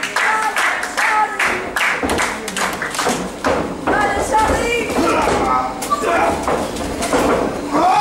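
Wrestling crowd clapping in quick claps at first, then voices shouting, with thuds of wrestlers' bodies on the ring mat.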